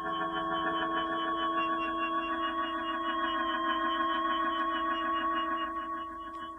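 Synthesized sci-fi sound effect: a steady electronic drone of several held tones with a fast shimmer, marking a character hovering in mid-air. It eases off near the end.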